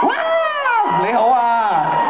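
A man's voice amplified through a PA system, drawn out with long sliding pitch, like a stage host's exaggerated call into the microphone.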